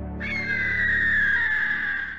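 A bird-of-prey screech sound effect: one long cry, starting suddenly a moment in and falling slowly in pitch, over a low sustained ambient music drone.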